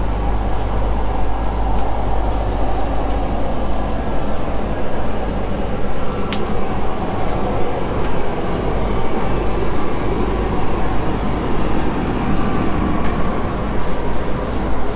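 Steady low rumble and hum inside a KTM ETS electric express train carriage, with a single sharp click about six seconds in.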